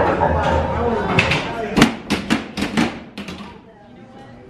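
People talking, then a quick, uneven run of about seven sharp knocks over roughly a second and a half.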